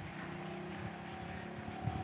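An engine running steadily, with a short thump near the end.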